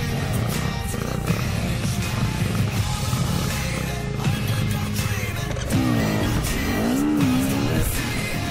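Background music playing over a dirt bike's engine running and revving.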